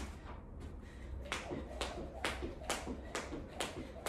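Skipping with a jump rope: sharp slaps of the cord against the floor with each turn, together with light shoe landings, at a steady pace of about two a second.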